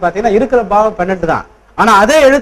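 A man speaking in a lecture, with a short pause about three quarters of the way through.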